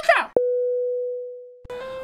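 A single steady electronic beep: it starts with a click and fades away smoothly over about a second and a half.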